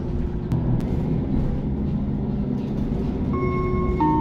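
City bus running between stops, a steady low engine and road rumble, with two sharp clicks about half a second in. Near the end the first note of the onboard chime that comes before the next-stop announcement begins to sound.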